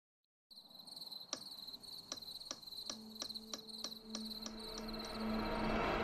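Crickets chirping in a night-time sound effect, with a regular ticking about three times a second that fades out after about four seconds. A low steady tone comes in about halfway and a soft swell rises near the end.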